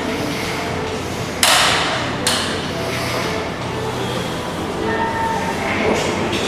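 Weight-stack gym machine clanking as its lever arm is pulled and let back: two sharp metallic clanks about a second and a half in and just after two seconds, each ringing briefly, over background music.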